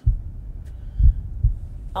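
Opening soundtrack of a documentary playing back: a low rumble that starts suddenly, with deep heartbeat-like thuds near the start, about a second in and again half a second later.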